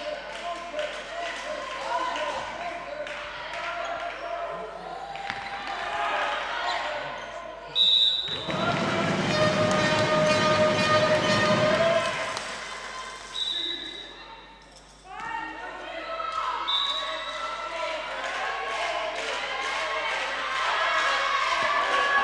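Handball game sounds echoing in a sports hall: the ball bouncing and slapping on the wooden floor, with players' and spectators' voices. A louder stretch of voices comes a third of the way in. Three short high whistle blasts sound at about 8, 13 and 17 seconds in.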